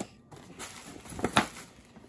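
Cardboard packaging box being handled and turned in the hands: a light rustle and scrape, with two sharp clicks a little past the middle.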